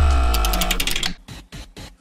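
Transition sound effect: a deep booming hit with a ringing musical tone and rapid mechanical clicking, fading out about a second in, followed by a few faint clicks.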